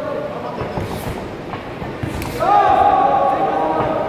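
A few dull thuds from the fighters' strikes and footwork on the ring in the first half, then, a little past the middle, a long, loud, held shout from a voice at ringside lasting about a second and a half.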